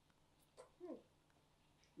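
Near silence, with one short, faint vocal sound falling in pitch just under a second in.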